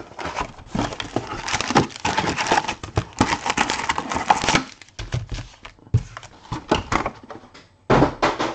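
Cardboard trading-card hobby box being handled and its packs taken out onto the table: dense rustling and scraping for about the first half, then scattered taps and clicks.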